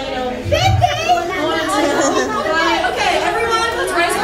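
Several people talking at once in overlapping chatter, with no single clear voice.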